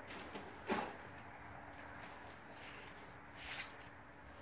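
Quiet room tone with two faint, brief handling noises, one about a second in and one near the end, as someone moves things about while looking for a pair of scissors.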